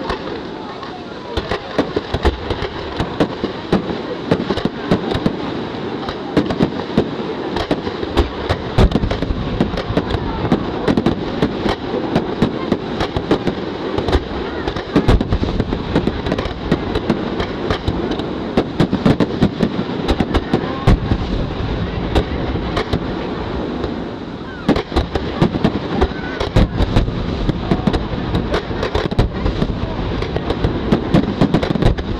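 Fireworks display: a rapid barrage of aerial shells launching and bursting, a continuous dense crackle packed with sharp bangs over a low rumble.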